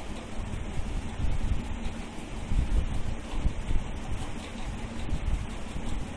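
Wind-like noise on the microphone: a low, uneven rumble with no clear pitch.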